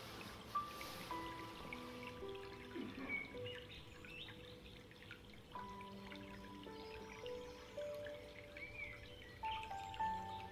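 Quiet, slow background music of long held notes changing now and then, with short bird chirps and a faint trickle of water mixed in.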